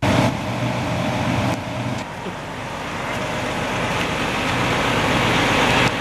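Large vehicle engine running, likely a bus: a steady low hum under loud, even noise. The noise dips about two seconds in and then slowly grows louder.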